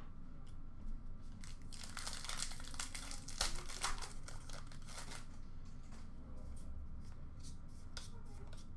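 A foil trading-card pack being torn open, its wrapper crackling and crinkling for a few seconds. Lighter clicks and rustles follow as the cards inside are handled.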